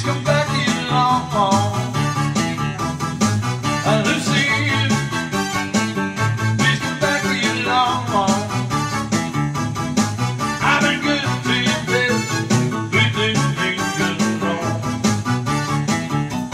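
A man singing while strumming a steady rhythm on an acoustic-electric guitar.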